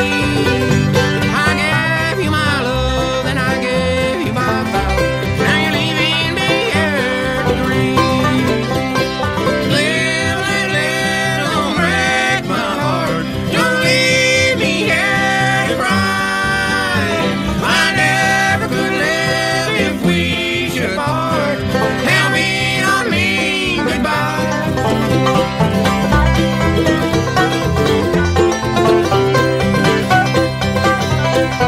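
Acoustic bluegrass band playing a song live, banjo most prominent, with guitar and mandolin.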